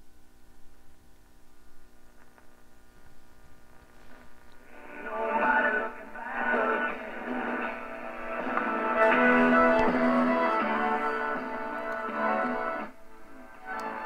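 1935 Philco 54C tube radio playing a station through its speaker: only faint sound at first, then music comes in about five seconds in as the dial is tuned, dropping away near the end. The set works but weakly: it plays, but not very well.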